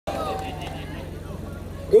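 Steady low electrical hum from an outdoor stage PA system, with faint voices in the background; a man starts speaking over the loudspeakers right at the end.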